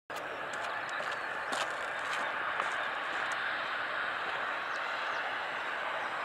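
Airbus A320 jet engines at take-off thrust on the runway, a steady, even roar heard from a distance, with a few faint clicks in the first few seconds.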